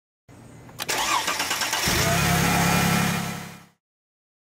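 Mercedes-Benz engine cranking with a sharp click, catching after about a second, and settling into a steady idle before it cuts off suddenly near the end.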